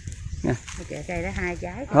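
Speech: a short spoken "ừ" followed by conversational talking voices.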